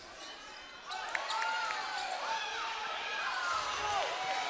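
Basketball game in a gym: the ball bouncing on the hardwood court amid shouts and voices from players and the crowd, which grow louder about a second in.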